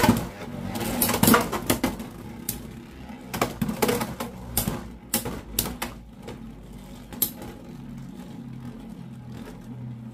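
Two Beyblade X tops launched into a plastic Beystadium: a sharp burst at the launch, then a rapid, irregular run of hard plastic clacks as they collide for about six seconds. The clacks then thin out into a steady whir of the two tops spinning on the stadium floor.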